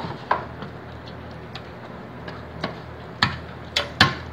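An aluminium baking tray being greased by hand with a wad of paper smeared with margarine: a soft background with a handful of light, irregular ticks and knocks of the metal pan as it is rubbed and shifted.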